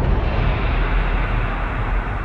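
A loud, steady low rumble of dense noise with no clear tone, typical of a dramatic soundtrack rumble under a tense scene.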